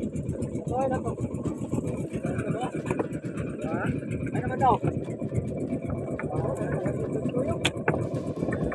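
A steady low motor rumble with people's voices talking over it now and then.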